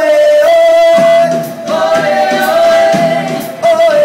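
Live band with vocals: the singers hold long sustained notes that step in pitch over the band's accompaniment, played loud through the venue's PA.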